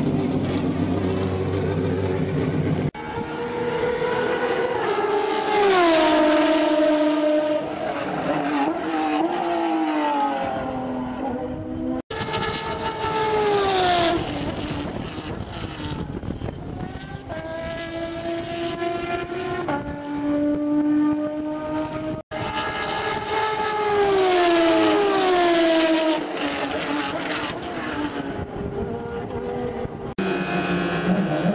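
Formula Renault 2.0 single-seater race cars' four-cylinder engines at high revs, heard from trackside across several cut-together clips. The engine note glides down and steps up as the cars pass, brake and change gear. The first few seconds hold a steadier, lower engine note.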